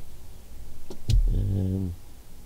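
A man's short, steady-pitched hum of hesitation, like a drawn-out 'mm', after a single sharp click a little under a second in.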